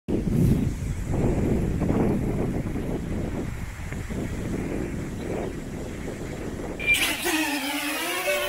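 Wind buffeting the microphone in gusts: a low, rumbling noise that rises and falls. About seven seconds in, a short pitched sound sliding downward cuts in.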